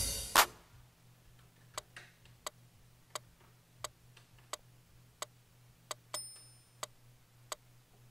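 Faint metronome click ticking evenly, about three clicks every two seconds, over a steady low electrical hum. The last drum hit fades in the first half second, and a brief high beep sounds about six seconds in.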